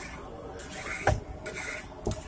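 Wooden rolling pin rolling out roti dough on a board, in repeated rubbing strokes, with a sharp knock about a second in.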